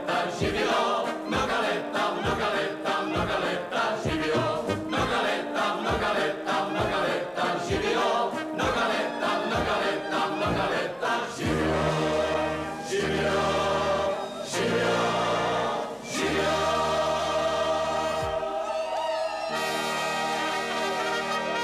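Group singing with brass band accompaniment on a steady beat of about two strokes a second; about eleven seconds in the beat stops and the band and singers hold long chords in a drawn-out ending.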